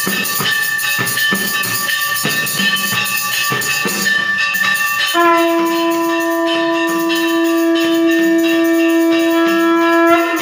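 Worship bells ringing with repeated percussion strikes during an aarti. About five seconds in, a horn is blown in one long steady note held for about five seconds.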